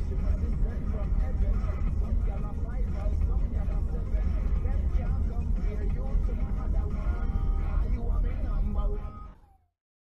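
Steady low rumble of a car driving, heard from inside the car, with indistinct talk over it; the sound fades out just before the end.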